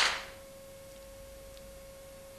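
Studio sound dying away at the very start, then a faint steady hum: one high tone with a fainter tone an octave above it.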